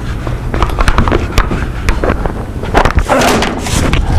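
Wooden shop jigs being handled on a workbench: a run of irregular knocks and clatters as a piece is set down and a board is picked up, with a short rustle about three seconds in.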